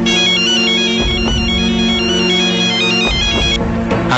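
Mobile phone ringing with a beeping ringtone melody of quick stepped notes that stops about three and a half seconds in, over steady background music.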